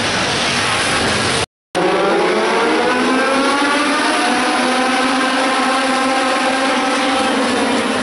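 A pack of Legend race cars running together, their small motorcycle engines revving in a steady overlapping drone that rises and falls. About a second and a half in, the sound cuts out completely for a moment.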